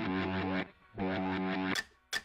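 Background music: sustained pitched chords that stop briefly under a second in and again near the end.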